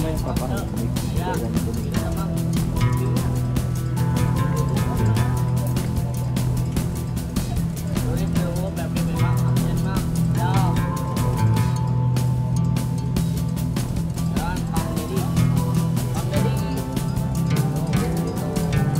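Background music with a steady beat and held melodic notes.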